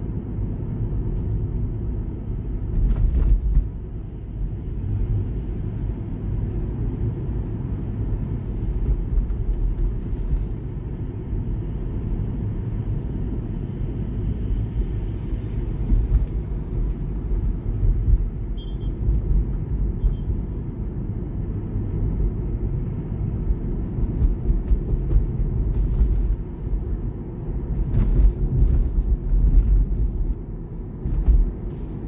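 Steady low road and tyre rumble heard inside the cabin of a moving Tesla Model 3, an electric car with no engine sound, with a few brief knocks about three seconds in, around the middle and near the end.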